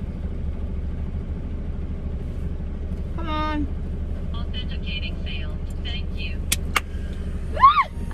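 Car cabin noise while driving: a steady low rumble of engine and road. A few short sounds rise over it, including two sharp clicks near the end.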